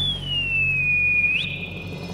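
A single high whistle-like cartoon tone that glides slowly down in pitch, then flicks sharply up near the end before fading, over a low steady hum.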